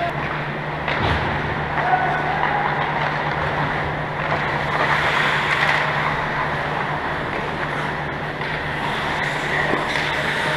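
Ice hockey play: skate blades scraping and carving on rink ice, with occasional stick and puck clacks, one sharper clack about a second in, over a steady low hum.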